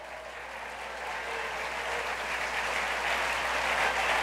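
Congregation applauding, the clapping growing steadily louder.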